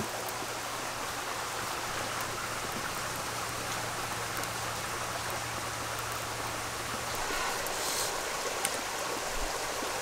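Steady rushing of a small shallow stream, an even hiss of flowing water, swelling a little near the end.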